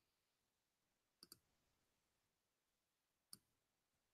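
Near silence, with faint computer-mouse clicks: a quick double click just over a second in and a single click late on.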